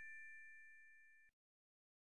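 Faint, fading ring of a bell-like chime sound effect, two steady tones dying away and cutting off abruptly about a second and a quarter in, leaving silence.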